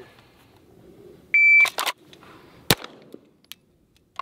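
Shot-timer start beep, a couple of quick clicks right after it, then a single pistol shot from the Atlas Gunworks Athena Tactical 2011 about a second and a third after the beep, a timed draw-and-fire from the holster.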